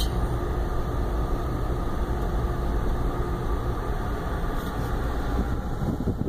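Steady low rumble of a car's engine and tyres heard from inside the cabin as the car drives slowly, with a faint steady hum that fades out about halfway through.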